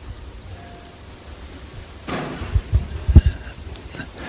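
Low steady hum from the microphone line. About two seconds in comes a short cluster of low thumps with some rustling, picked up close to the microphone.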